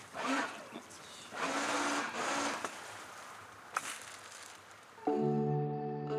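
Faint voices of people talking and greeting in the first few seconds. About five seconds in, background music comes in with a held, sustained chord.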